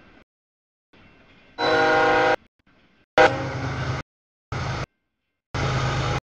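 Freight locomotive air horn blowing as the train reaches the grade crossing, a chord of steady tones loudest about a second and a half in. It comes in short chopped pieces broken by silent gaps, later ones carrying the low rumble of the diesel locomotive passing.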